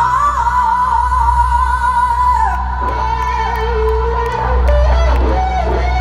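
Live rock band heard from the audience in a large hall: a singer holds long sustained notes over electric guitar, the held pitch stepping down about halfway through.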